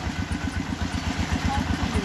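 Engine of a small water-well drilling rig running steadily, with a rapid, even chugging beat.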